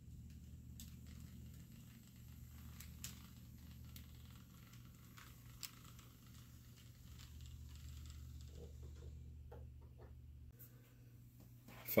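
Faint low hum of model train locomotives running along the track, with scattered light clicks; the hum stops about ten and a half seconds in.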